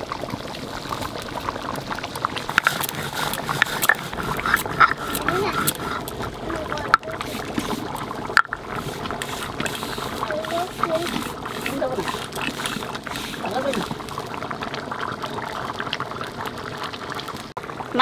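Spice seeds being ground on a flat stone slab with a hand-held grinding stone (shil-nora): a continuous gritty scraping of stone on stone, with many small clicks.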